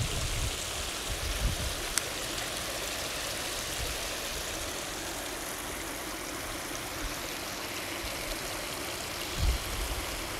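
Wind buffeting a phone's microphone: a steady rushing noise with gusts of low rumble, the strongest near the end. A single sharp click comes about two seconds in.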